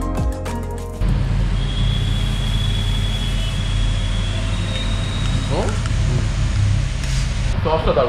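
Background music that cuts off about a second in, followed by a steady low hum of room noise with a few brief, faint voices.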